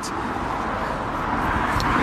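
Road traffic: a car passing on the road beside the pavement, its tyre noise a steady hiss that slowly grows louder as it approaches.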